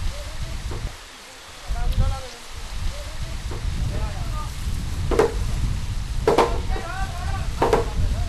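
Three sharp hammer blows on timber in the second half, a little over a second apart, over a low rumble and faint background voices.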